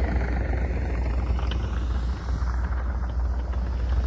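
Heavy diesel machinery running steadily, a deep, continuous engine rumble.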